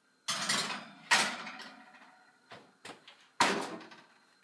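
Metal cupcake tin set onto an oven rack and the rack slid in: two clattering scrapes in the first second or so, then a couple of light knocks, then the oven door shut with a sharp clunk about three and a half seconds in.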